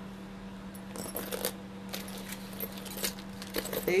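Metal costume earrings on cardboard display cards being handled, clinking and jingling in scattered light clicks and short rattles over a faint steady hum.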